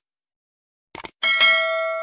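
Subscribe-button animation sound effect: a short mouse click about a second in, then a bright notification-bell ding that rings on and slowly fades.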